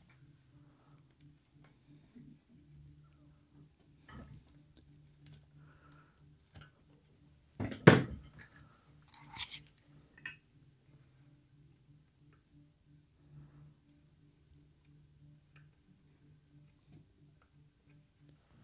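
Tools and parts being handled on a workbench: scattered light clicks, a sharp clatter about eight seconds in and a few smaller knocks just after, over a faint steady low hum.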